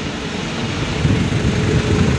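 Vehicle engine idling: a low, uneven rumble with a faint steady hum in the second half.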